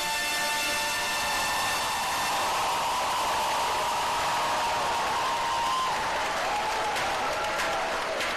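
Large audience applauding, with a few held cheers above the clapping, as the brass band's final chord dies away at the start.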